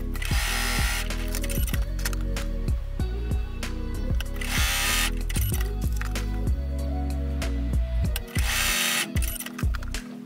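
Sewing machine stitching in three short runs, near the start, about halfway and near the end, over steady background music.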